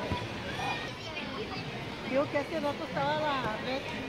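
People's voices talking and calling out, the words not clear, strongest in the second half, over a steady background of outdoor chatter.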